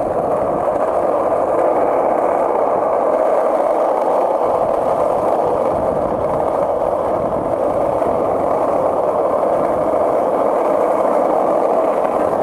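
Skateboard wheels rolling steadily over rough asphalt, giving a continuous grinding rumble.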